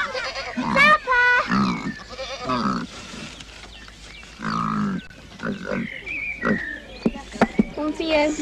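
A domestic pig grunting in its pen, a string of short calls with a few higher squeals among them.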